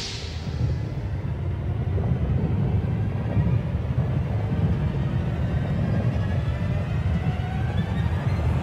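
Cartoon sound effects: a sharp burst as a magic spell goes off in a white flash, then a deep, steady rumble under ominous music.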